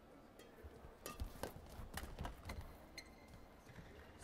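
Badminton rally: a quick run of racket strikes on a shuttlecock, about seven sharp clicks, with players' footfalls thudding on the court floor, heard faintly.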